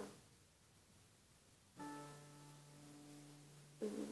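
Acoustic guitar: after a quiet pause, a note or chord is plucked almost two seconds in and left ringing, slowly fading.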